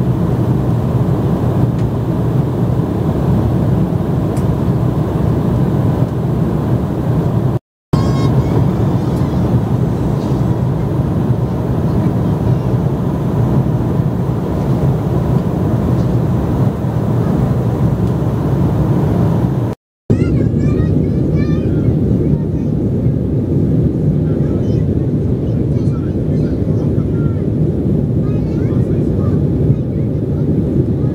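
Steady cabin drone of an Embraer 190 jet airliner in flight, engine and airflow noise, cutting out briefly twice.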